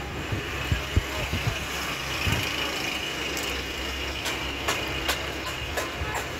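Steady low engine hum of a vehicle running, over general street noise, with a few faint scattered clicks.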